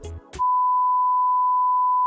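Background music cuts off a moment in, and a single steady high beep begins: the test-pattern tone that goes with TV colour bars.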